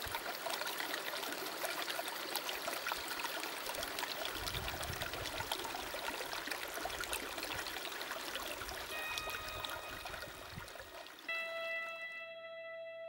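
Shallow creek running over pebbles: a steady rushing, trickling water sound. Near the end a few sustained guitar notes ring out over it.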